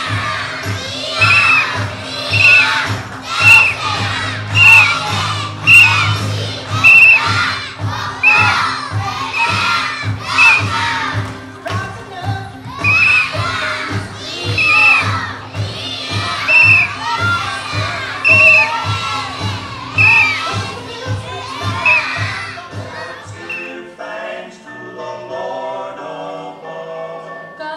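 A group of children shouting together in rhythm, about one loud shout a second, over backing music with a steady low beat. The shouts pause briefly near the middle, and near the end they stop and a different tune begins.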